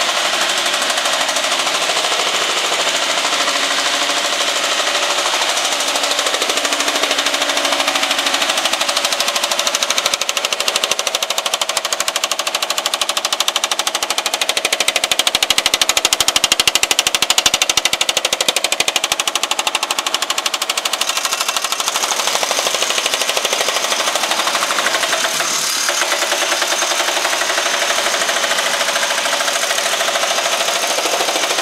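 Baileigh MH-19 power hammer hammering a sheet-metal panel with a fast, continuous stream of blows, loudest about halfway through.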